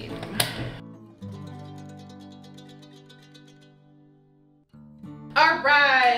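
A sharp click as a heartworm test cassette is pressed down in the benchtop test analyzer. Then a short instrumental music cue of held tones that fades away, and a woman's speech resumes near the end.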